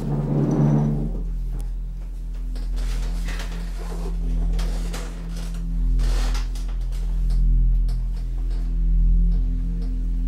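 Ambient drone music: steady low sustained tones with scattered clicks, swelling loudest in the first second.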